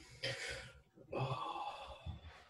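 A person takes a short, sharp breath in, then lets out a longer soft breath: a hesitant pause while weighing a hard question before answering.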